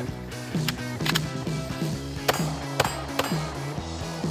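Background music with five sharp pistol shots at uneven spacing over it.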